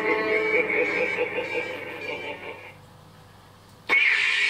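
A warbling, music-like electronic sound fades out over the first few seconds. Near the end the Proffie Neopixel lightsaber's speaker gives a sharp click and a loud burst of hiss as the blade ignites on the next preset.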